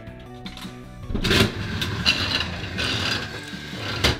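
Toy slot machine playing its electronic casino jingle while its reels spin with a mechanical whirring. A loud clack comes a little over a second in.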